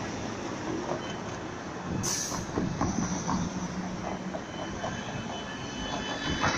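Street traffic at a junction crossed by tram tracks: cars passing, with a thin, steady high squeal of tram wheels on the rails and a brief hiss about two seconds in.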